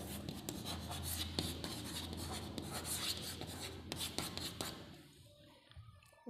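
Chalk writing on a chalkboard: a run of quick scratches and taps as words are written, dying away about five seconds in.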